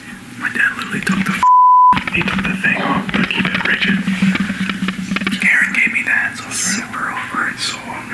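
A censor bleep: one steady high beep about half a second long, about one and a half seconds in, replacing the audio entirely, amid men's conversation.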